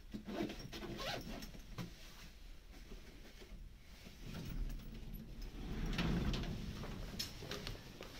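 Lift car doors of a Schindler 5500 traction lift sliding open with a low rumble that builds from about halfway through, after a few light knocks. A couple of footsteps near the end.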